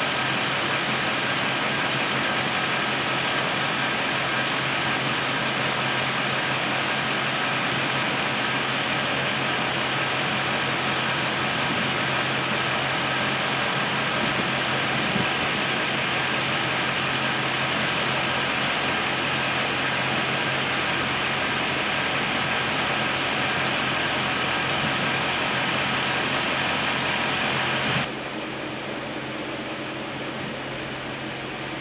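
Steady mechanical hum and hiss, unchanging for most of the time, then dropping in level near the end.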